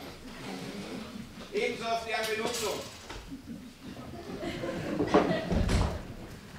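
Voices speaking indistinctly, with a heavy, low thump near the end.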